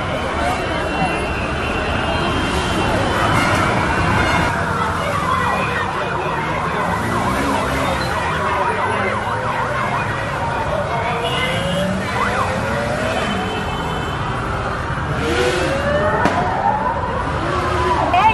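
Several police sirens wailing at once, their pitches sweeping up and down and overlapping, more prominent in the second half, over the continuous rumble of many motorcycle engines and street traffic.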